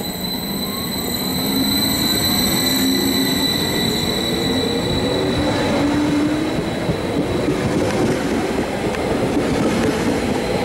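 A TILO RABe 524 (Stadler FLIRT) electric multiple unit pulls past close by, getting louder as it gathers speed. Its rolling rumble carries a rising whine from the drive and a steady high-pitched tone.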